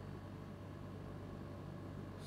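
Quiet room tone: a steady low electrical hum with a faint hiss.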